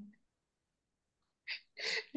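A person's voice over a video call: a word trails off at the start, then a dead-silent gap. About one and a half seconds in comes a short breathy burst, and the voice starts again near the end.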